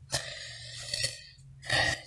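A pause in speech with faint handling noise, then a short, throaty vocal sound near the end.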